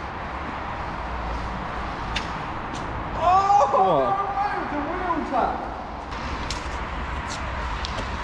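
Steady rushing and low rumble of a mountain bike being ridden on its back wheel across a concrete car-park floor, with wind on a moving camera and a few sharp clicks. A man's voice calls out for about two seconds in the middle.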